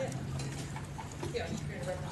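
Meeting-room background: faint, indistinct talk with scattered small clicks and knocks over a steady low hum.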